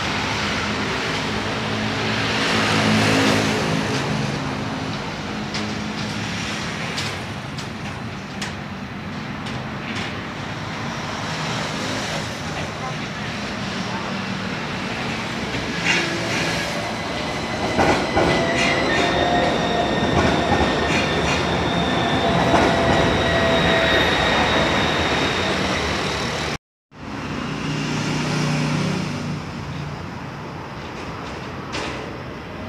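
An Athens tram rolling past close by on its tracks, with a few sharp clicks from the wheels and rails. As it goes by, its electric drive gives a high whine that rises slightly and then holds for several seconds.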